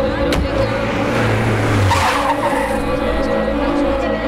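A car speeding away as a film sound effect. The engine hums and then the tyres squeal, swelling about two seconds in.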